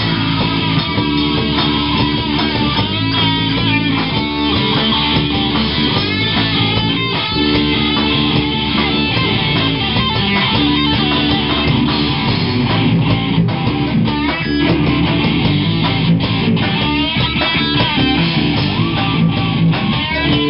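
Live rock band playing loud and without a break: electric guitars through amplifiers over bass and drums.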